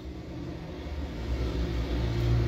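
Low rumble of a car heard from inside a car's cabin, growing steadily louder.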